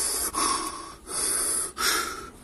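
A man's heavy hissing breaths, in and out about four times, in a Darth Vader-style imitation.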